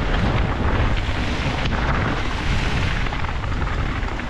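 Wind rushing over a helmet-mounted camera's microphone, with the steady rumble and rattle of a Canyon Sender downhill mountain bike's knobby tyres rolling fast over a dirt trail.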